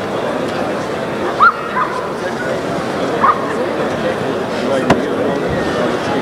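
German Shepherd dog giving two short, high yelps, one about a second and a half in and one about three seconds in, over a steady background murmur of voices. There is a sharp click shortly before the end.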